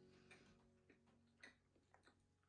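Near silence with a few faint, scattered clicks about half a second apart: soft mouth sounds of someone chewing a baked pastry. A faint held tone dies away in the first second and a half.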